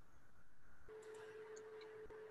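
Near silence: faint room tone, with a faint steady tone coming in about a second in.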